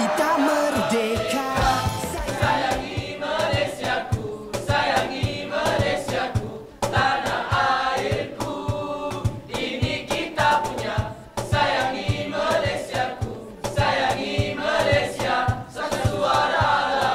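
A pop song with group vocals singing in Malay over a steady, driving beat.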